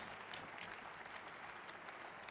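Faint, steady applause from many members of a parliament clapping in their seats.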